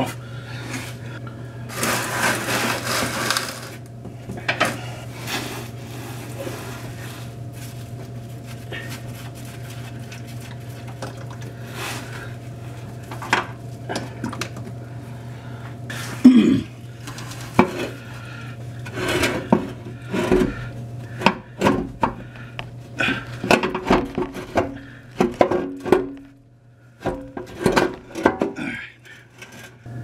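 Scattered metal clinks, knocks and scrapes as the oil filter and the oil pan of a 1994 Saab 9000 are worked loose by hand and lowered. There is a burst of scraping near the start and one sharp knock, the loudest sound, about halfway through, all over a steady low hum.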